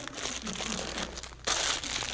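Plastic bag of paraffin flakes crinkling as it is handled, with a louder rustle about one and a half seconds in.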